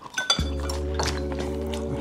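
A few light clinks of chopsticks against ceramic bowls, then background music comes in about half a second in: a held chord over a steady low bass.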